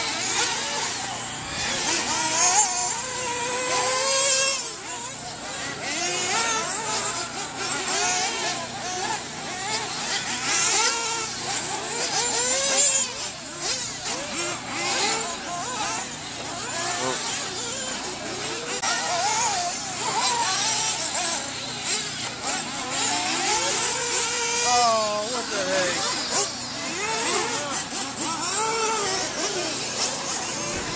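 Several radio-controlled short-course trucks racing on a dirt track, their motors whining up and down in pitch as they speed up and slow through the corners, over the hiss of tyres on the dirt.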